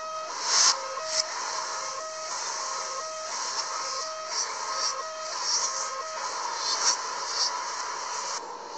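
Metro train and platform screen doors' warning beeps, a repeated two-pitch beep with short gaps, played backwards. The beeps stop about six seconds in, with hissing bursts from the doors among them; the loudest comes about half a second in.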